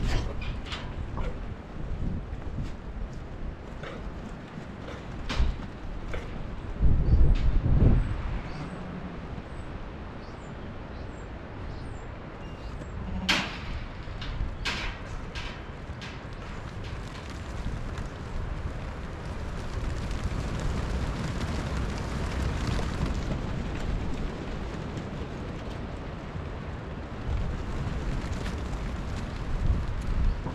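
A flock of sheep milling and trotting on a dirt and gravel yard, making a steady patter of hoof steps with scattered sharper taps. Wind buffets the microphone, with one strong gust about seven seconds in.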